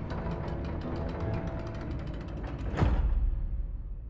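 Rapid mechanical clicking and ratcheting, like clockwork gears turning, over music from the episode's soundtrack. Nearly three seconds in, it gives way to a single deep boom that fades out.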